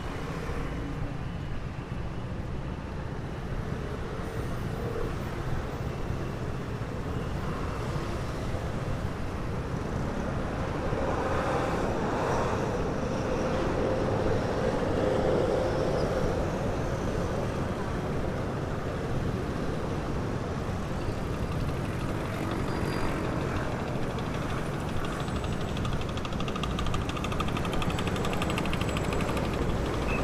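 Busy city street traffic: cars and motor scooters running at an intersection, a steady traffic noise that grows somewhat louder in the middle.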